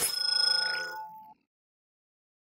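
Logo sound effect: a whoosh into a bright, ringing chime of several tones that fades and cuts off about a second and a half in.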